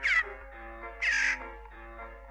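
Two harsh, caw-like squawks from a cartoon magpie, about a second apart, the first sweeping down in pitch, over soft instrumental music.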